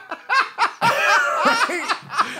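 Men laughing hard together, in a string of short bursts.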